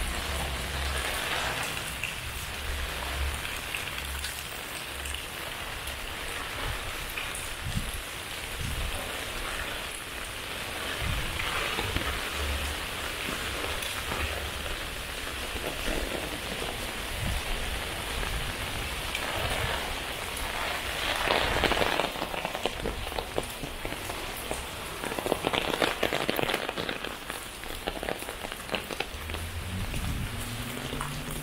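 Steady rain falling on a wet paved street and foliage, swelling louder twice in the second half.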